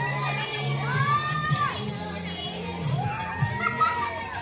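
A crowd of schoolchildren cheering and shouting, with long rising-and-falling whoops about half a second in and again near the end, over a Kannada dance song.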